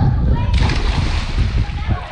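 A child jumping into a swimming pool: a sudden splash about half a second in, followed by about a second of churning water as he goes under and starts to swim.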